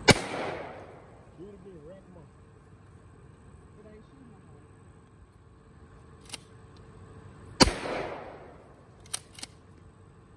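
Two shotgun blasts from a short pistol-grip pump shotgun fired from the hip, one right at the start and one about seven and a half seconds in, each trailing off over about a second. A little after the second shot the pump is worked, with two quick clacks.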